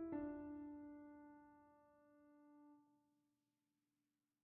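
Solo piano background music: a chord struck at the start rings out and slowly dies away, fading out by about three seconds in.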